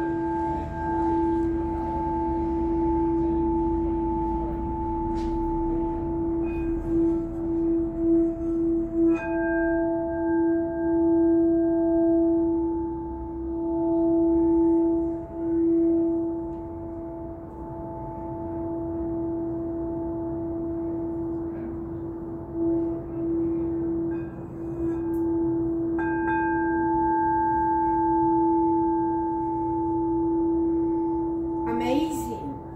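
A handheld clear quartz crystal singing bowl, played by circling a wand around its rim, sounds one sustained note, E, over a set of higher overtones. The tone swells and wavers in loudness throughout. The upper overtones are brought back when the rim is struck again about nine seconds in and once more near the end.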